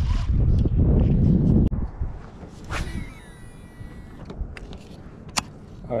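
A cast with a baitcasting rod and reel: a quick swish of the rod, then the reel's spool whirring as the line pays out, its whine falling as it slows, then a few sharp clicks from the reel. Before the cast, a loud low rumble cuts off abruptly.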